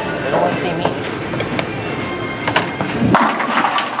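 Bowling alley din: crowd chatter and background music over the rumble of rolling balls, with scattered sharp knocks and clatters of pins. The low rumble cuts off suddenly about three seconds in.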